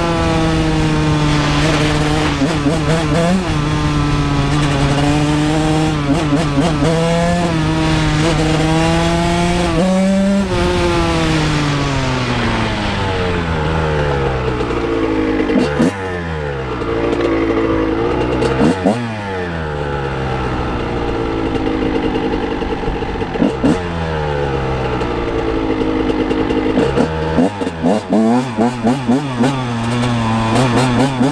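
A 1999 Honda CR125R's 125cc two-stroke single-cylinder engine being ridden, held at high revs for about ten seconds. The revs then drop and it pulls through lower revs with quick throttle blips, ending in choppy on-off throttle.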